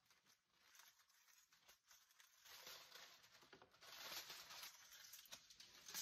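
Aluminium foil over a roasting pan crinkling and rustling faintly as it is handled, louder from about halfway through.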